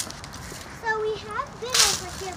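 A high-pitched voice making a few untranscribed sounds, then a short, sharp swish near the end.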